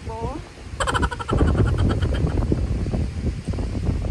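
High-pitched voices calling out briefly in the first second, then wind buffeting the microphone with a low rumble for the rest.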